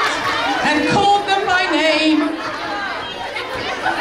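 Several people talking over one another in a large hall: indistinct chatter from the stage and audience.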